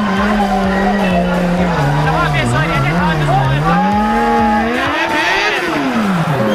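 Several motorcycle engines revving at low speed, their pitch rising and falling again and again as riders blip the throttles to keep the bikes creeping forward. One engine climbs in pitch a little before the end, then drops back. Voices of the watching crowd come through underneath.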